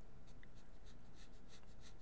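Felt-tip marker hatching on paper: a quick run of faint, short scratching strokes, about five a second, over a low steady hum.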